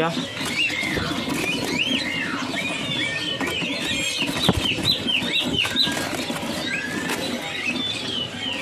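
Many caged birds chirping and whistling together: short rising and falling calls come thick and fast throughout. A single sharp knock sounds about halfway through.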